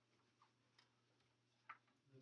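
Near silence: room tone with a faint steady low hum and three soft, scattered clicks, the last and clearest near the end.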